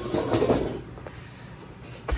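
A metal-framed folding chair being pulled over and sat in: a short scraping rustle in the first second, then quiet.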